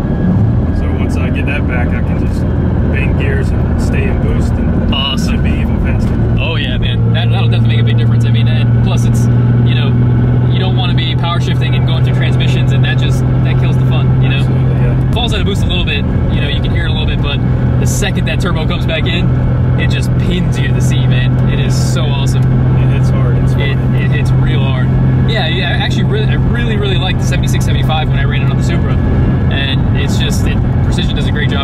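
Mitsubishi 3000GT VR-4's turbocharged V6, heard inside the cabin on the move: a steady engine drone that steps in pitch a few times, with no hard revving.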